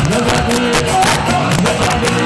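Live salegy band playing loudly: drum kit hits in a steady rhythm under held electric guitar notes.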